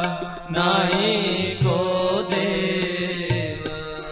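Sikh kirtan: harmoniums play steady sustained chords under a wavering, ornamented sung line, with a low drum stroke about every second and a half.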